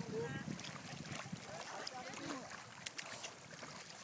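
Shallow seawater sloshing and lapping around people wading waist-deep, with a steady hiss of water and wind.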